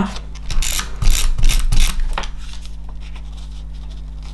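Adhesive tape runner being run over paper: a few short strokes in the first two seconds, then it goes quiet.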